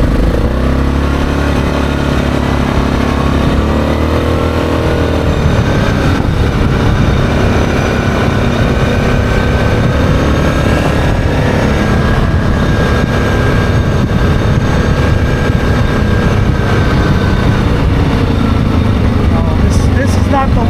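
ATV engine running at road speed, its pitch rising and falling a little in the first few seconds and then holding steady, with wind rushing over the microphone.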